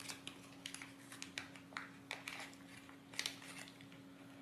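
Small clear plastic bag crinkling and crackling in faint, irregular clicks as an ultrasonic sensor board is pulled out of it.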